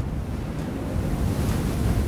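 Strong wind blowing snow in a blizzard, with a deep rumble of gusts buffeting the microphone.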